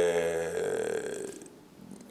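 A man's long, drawn-out hesitation sound, a level 'eeeh' held on one pitch. It fades away about a second and a half in.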